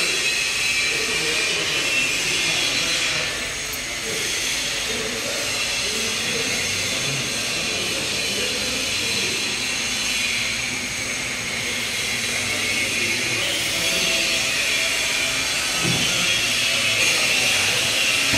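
A steady hiss runs throughout, with indistinct voices faintly beneath it.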